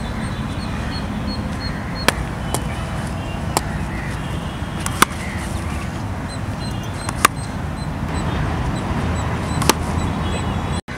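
Steady low rumble of outdoor background noise, with about six short sharp clicks at uneven intervals.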